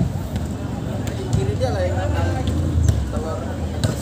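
Faint voices of people talking in the background over a low steady rumble, with a single sharp knock near the end.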